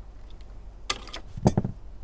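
Hand work on a car wiring harness while a wire end is stripped: a sharp click a little under a second in, then a short cluster of knocks and rustling about half a second later.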